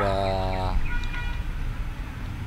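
A man's drawn-out hesitation 'uhh', held on one pitch for under a second, then an outdoor background rumble.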